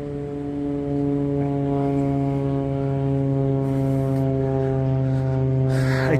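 A steady droning hum at one unchanging pitch, getting slightly louder about a second in.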